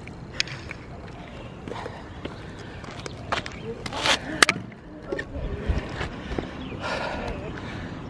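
Footsteps on a gritty asphalt court, then a few sharp knocks and scuffs close to the microphone, the loudest cluster about four seconds in, over a low steady background.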